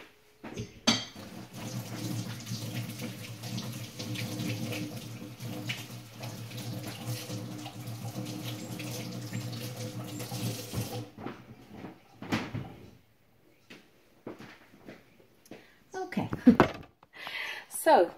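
A tap runs steadily while hands are washed under it, and is shut off abruptly about eleven seconds in. Scattered knocks and handling noise follow, with a loud knock near the end.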